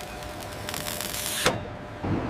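Steady mechanical whirring and hiss of shipboard metalwork, with a sharp clank about one and a half seconds in, after which the hiss drops away.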